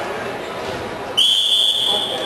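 Referee's whistle blown once, a single steady high blast of about a second that starts suddenly just over a second in, stopping the wrestling action.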